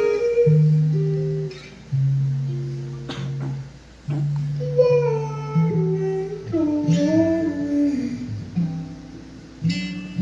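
Live acoustic guitar playing a slow passage of held, ringing notes, with a male voice singing a gliding melody over it. The phrases fade away and start again twice.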